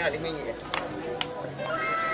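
Two sharp clicks about a second in, then a voice sliding up and down in pitch toward the end.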